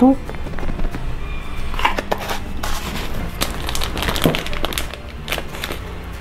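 Irregular small clicks and rustles of kitchen handling: a plastic measuring spoon tapped over a stainless steel mixing bowl, then ingredient containers handled, with faint music in the background.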